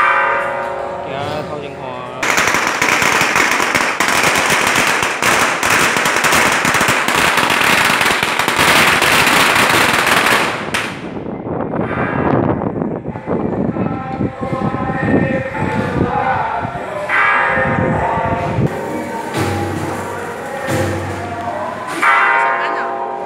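A long string of firecrackers going off in a rapid crackle for about eight seconds. It starts about two seconds in and cuts off sharply.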